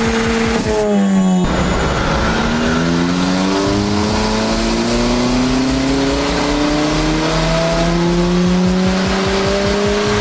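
Ford Fiesta ST180's turbocharged 1.6 four-cylinder, fitted with a VT330R hybrid turbo, making a full-throttle dyno pull. The revs drop briefly about a second in, then climb steadily and unbroken towards about 6000 rpm.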